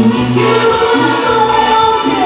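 Peruvian cumbia band playing live, with a singer holding long notes over a steady bass beat.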